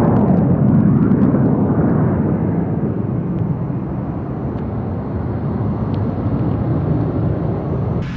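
Aero L-39 Albatros jet trainer's single turbofan engine at climb power, heard from the ground as the jet climbs away. It is a steady rushing jet noise, loudest at first, that slowly fades as the jet recedes.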